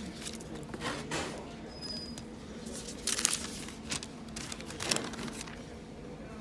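A paper receipt crinkling as it is picked up and handled, in a few short bursts of rustling over a steady low background hum.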